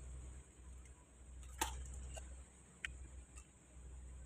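Quiet room tone with a low steady hum, broken by three or four faint, scattered clicks.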